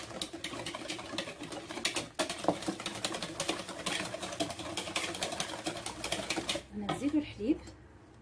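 Wire whisk beating eggs, sugar and oil in a mixing bowl: a rapid, steady clatter of the wires knocking and scraping against the bowl, which stops about a second before the end.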